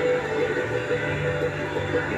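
Background music with sustained, held tones.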